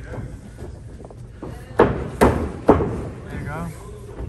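Three sharp smacks about half a second apart, followed by a short voice.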